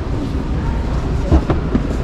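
Shopping cart rolling across a concrete warehouse floor, its wheels giving a steady low rumble and rattle, with two sharp knocks about a second and a half in.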